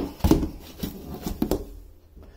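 A plastic seed tray being set down and handled in a stainless steel sink: a few sharp knocks and bumps, the loudest about a quarter second in and two more around one and a half seconds.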